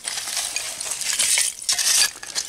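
Short-handled digging tool scraping and raking through old dump fill, with shards of glass and debris clinking and rattling in quick, irregular little clicks.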